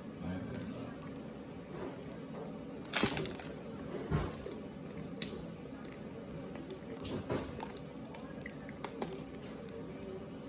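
Chunks of starch crunching as they are chewed and broken apart by hand. A sharp crack about three seconds in is the loudest sound, followed by a few softer cracks.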